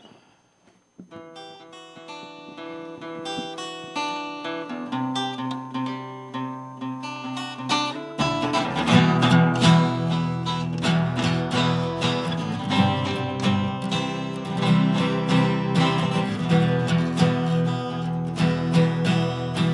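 Acoustic guitars playing a song's intro. A soft picked melody starts about a second in and builds, then fuller strumming with deeper notes comes in about eight seconds in and the music gets louder.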